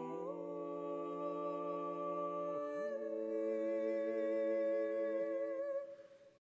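A small a cappella ensemble of men's and women's voices singing slow, long-held chords with a light vibrato. The chord moves about a third of a second in and again a little before halfway, and the voices fade away at the very end.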